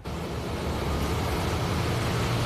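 Steady outdoor background rumble and hiss picked up by a field microphone, starting abruptly when the audio switches over, with no clear pitch or rhythm.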